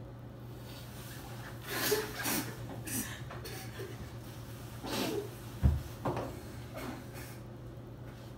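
A person sniffling and breathing in short, noisy bursts, with a sharp thump a little past halfway, over a steady low hum.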